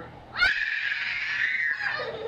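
A young child's long, high-pitched scream of excitement during a piggyback shoulder ride, starting about half a second in and held for about a second and a half.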